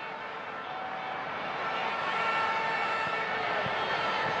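Football stadium crowd noise, a steady roar with faint held tones in it, swelling slowly.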